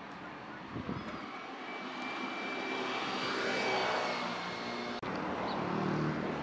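A passing engine, its noise swelling to a peak a little past the middle and then easing, with a steady high whine over it.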